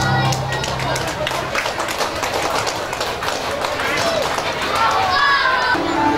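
A live song's last held note stops about a second and a half in, followed by a patter of scattered applause and crowd voices.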